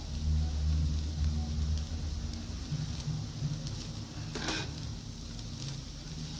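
A spoon stirring and turning flattened-rice pulao in a nonstick frying pan, with a soft sizzle and light scraping clicks over a steady low rumble. One louder, brief scrape comes about four and a half seconds in.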